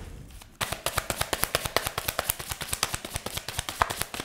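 A deck of tarot cards being shuffled by hand: a quick, even run of card snaps, about nine or ten a second, starting about half a second in.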